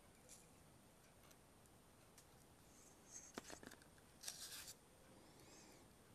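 Near silence in a small room, with a few faint clicks and a brief scrape around three to four seconds in as small hand tools are handled on the workbench.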